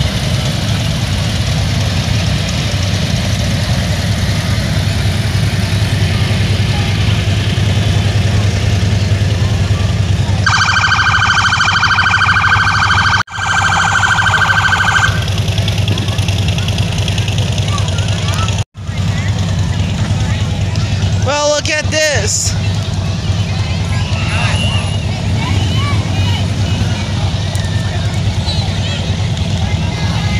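A parade-route police siren: a held siren tone lasting a few seconds about a third of the way in, then a short rising-and-falling whoop about two-thirds of the way in. Under it runs a steady low rumble with crowd chatter.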